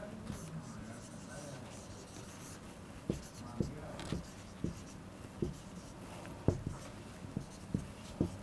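Marker pen drawing on a whiteboard. It starts as a faint scratch, then from about three seconds in comes a run of short, irregular taps as the tip strokes out zigzag lines.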